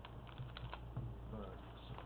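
A few faint, sharp clicks over a steady low hum, with a brief snatch of a voice about one and a half seconds in.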